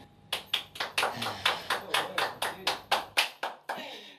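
Hand clapping: a run of sharp, separate claps, about five a second, that stops near the end.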